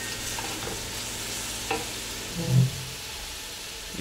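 Soffritto sizzling in a large aluminium pot as a wooden spoon stirs it, with a couple of sharp clicks from the spoon. A short low voice sound about two and a half seconds in.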